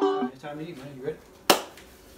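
A single sharp hand clap about a second and a half in, short and crisp.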